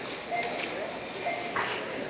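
Busy supermarket checkout ambience: indistinct voices of many shoppers talking in the background, with no one near speaking.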